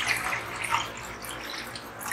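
Milk pouring from a plastic bowl into a stainless steel kadai, splashing steadily onto the metal and into the milk already in the pan.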